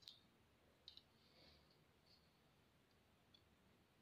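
Near silence with a few faint clicks: one at the start, a double click about a second in, and a small one a little after three seconds.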